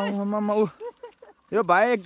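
A plough ox lowing in one long, level call that stops under a second in, followed near the end by a man's brief shout to the team.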